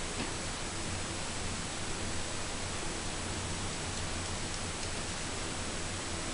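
Steady hiss with a faint low hum and no distinct events: the recording's background noise, room tone picked up by the camera's microphone.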